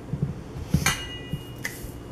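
Metal utensil knocking and clinking against a stainless steel mixing bowl: a few sharp knocks, the loudest just under a second in, after which the bowl rings with a thin tone that lingers.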